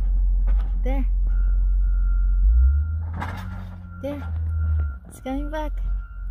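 Low rumble of a road grader's engine as it passes, plowing snow from the street, heard from inside a car. The rumble swells in the middle with a burst of noise about three seconds in. Short rising vocal sounds come in a few times.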